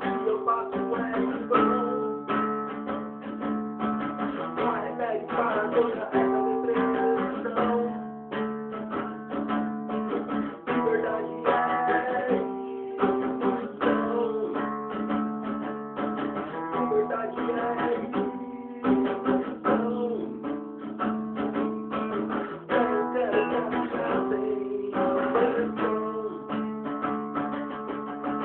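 Acoustic guitar strummed steadily, a run of chords changing every second or two with no singing.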